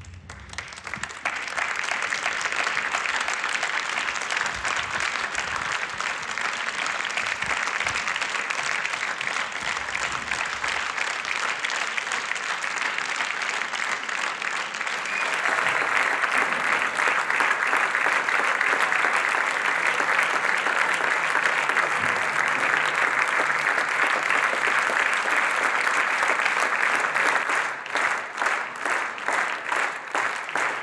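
Theatre audience applauding. The applause builds about a second in and swells louder around the middle. Near the end it turns into rhythmic clapping.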